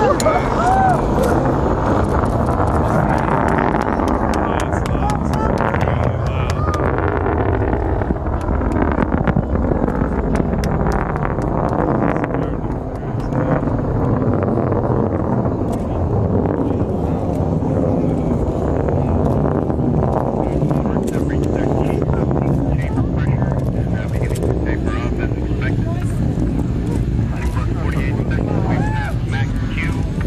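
Delta II rocket's engines and solid boosters in flight: a continuous deep rumble laced with sharp, irregular crackling.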